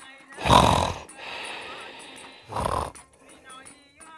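A man snoring: two loud snores about two seconds apart, each about half a second long, with a quieter breath between them.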